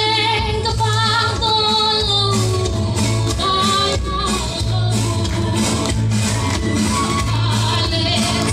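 A woman singing a song through a microphone and PA, amplified in a hall, over accompaniment with a steady low beat.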